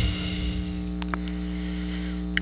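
Steady electrical mains hum, a low buzz made of several steady tones, with two faint small ticks about a second in.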